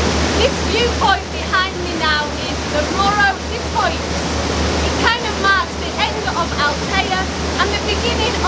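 Steady rush of wind and churning wake water on a tour boat under way, over the low drone of its engine, with a woman talking over the noise.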